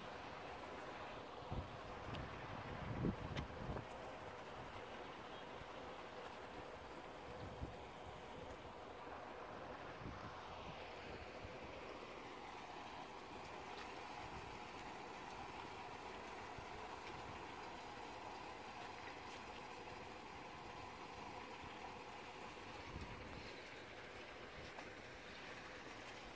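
Quiet outdoor ambience: a steady, faint background hum with no clear single source, and a few low thumps about two to four seconds in and again near eight seconds, typical of handling or wind on a handheld phone microphone while walking.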